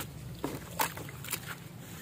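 Soaked red-dirt clay being squeezed and crushed by hand in a basin of muddy water: a few sharp wet squelches and splashes, about four in two seconds, over a low steady hum.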